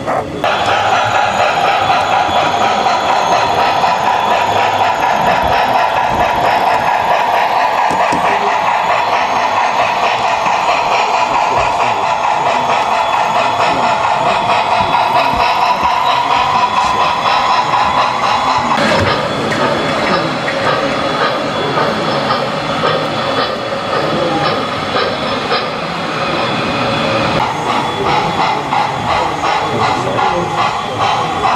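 Model steam locomotive running slowly on a layout, a steady mechanical running sound with a tone that rises gradually over the first twenty seconds. The sound changes about nineteen seconds in.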